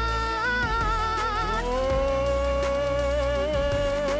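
Men singing long drawn-out notes into handheld microphones, the notes wavering in vibrato; about a second and a half in, one note stops and a new one slides up and is held.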